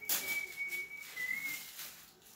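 A single long, high whistled note held for over a second and a half, dipping slightly in pitch past the middle, with the rustle of tissue paper and a gift bag being handled.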